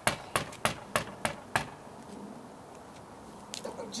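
Knuckles knocking on a front door: a run of about six sharp knocks, roughly three a second, over the first second and a half, then a pause and two more knocks near the end.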